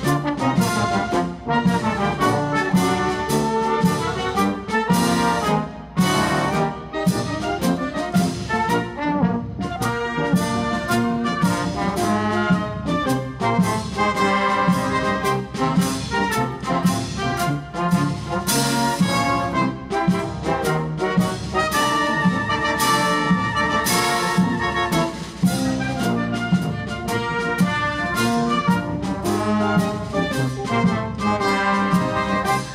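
Brass band playing a dobrado, a Brazilian march, with trumpets and trombones carrying the tune over a steady beat.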